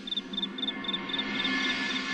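Crickets chirping in a steady rhythm, about four chirps a second, over faint held background-music tones.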